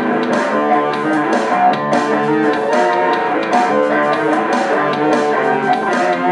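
Electric guitar played live with a band in an instrumental passage, with a steady beat of sharp hits running under it and no singing.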